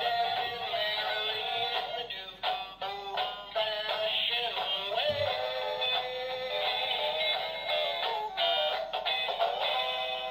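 Animated plush Christmas tree toy singing a Christmas song through its small built-in speaker, a thin sound with almost no bass.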